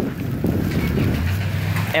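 Wind buffeting a handheld camera's microphone outdoors: a loud, rough low rumble, with a steady low hum coming in about halfway.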